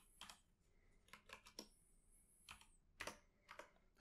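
Faint computer keyboard key clicks, about ten irregular taps as Blender shortcuts are typed.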